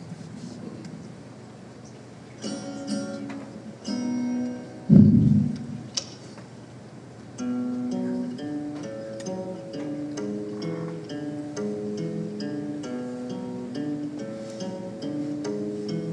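Hollow-body electric guitar: a few scattered plucked notes and chords, a loud thump about five seconds in, then from about halfway through a steady, evenly picked line of single notes opening the song.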